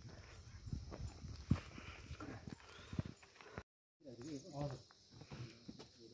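Quiet outdoor ambience with scattered light clicks and knocks and faint distant voices, broken by a brief dead-silent gap a little past the middle.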